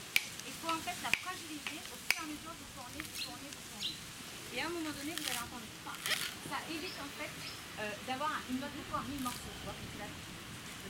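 Coconut husk being pried apart on a pointed stake, with sharp cracks and tearing of the fibrous husk every second or so. Voices talk in the background.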